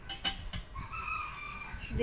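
A drawn-out animal call lasting about a second, starting about half a second in, preceded by a couple of light clicks.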